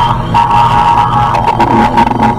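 Electronic sound-design soundscape made with iPad synth and effects apps: a low drone under a steady high tone that comes in about a third of a second in, broken by rapid glitchy clicks.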